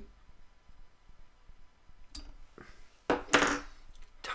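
Quiet handling at a fly-tying bench as the finished fly is taken out of the vise: a light click about two seconds in, then a louder, brief rustle and knock about three seconds in.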